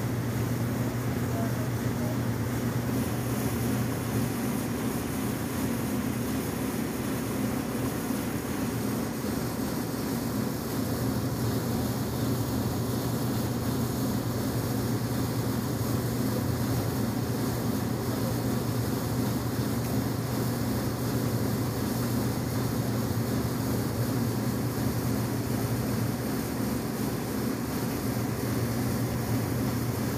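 Steady mechanical drone of running machinery: a constant low hum over an even hiss, unchanging throughout.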